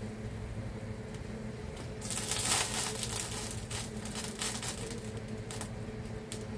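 Paper butter wrapper crinkling as butter is scraped off it with a plastic spatula. A loud rustle comes about two seconds in, followed by scattered light clicks and scrapes, over a steady low hum.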